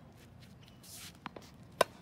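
Tennis racket striking a tennis ball on a forehand: one sharp crack near the end, the loudest sound, with a couple of lighter taps shortly before it.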